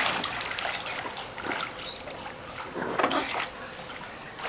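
Water splashing and sloshing in an inflatable backyard pool as a child moves about in it, in irregular splashes, loudest at the start and again about three seconds in.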